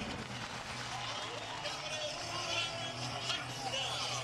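Stadium ambience from a college football broadcast just after a touchdown: a steady mix of crowd and players' voices with faint music over a low, even hum.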